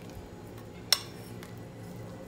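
Metal spoon stirring cocoa powder into thick oat porridge in a glass bowl, with one sharp clink of the spoon against the glass about a second in.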